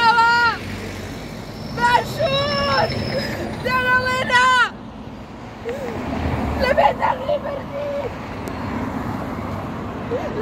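A woman shouting protest slogans in long, drawn-out chanted phrases, three in the first five seconds and a shorter burst of shouting around seven seconds in, over the steady rumble of passing road traffic.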